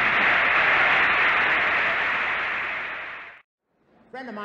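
Audience applauding, an even clatter that fades and then cuts off suddenly about three and a half seconds in.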